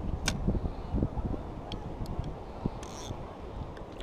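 Wind buffeting the microphone in a steady low rumble, with a few sharp clicks: one strong click just after the start and several lighter ones around the middle.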